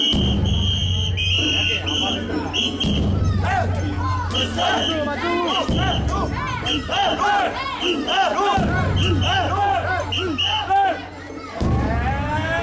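Mikoshi bearers chanting and shouting together as they carry the portable shrine, many voices overlapping, while a whistle is blown in short repeated blasts over them. A low rumble comes and goes underneath.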